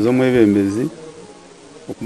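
A man's voice holding one drawn-out vowel, a hesitation sound at a steady pitch, for just under a second, then a pause.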